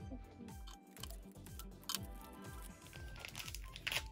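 Background music, with the crinkling of a small plastic wrapper being picked open by hand in short crackly bursts.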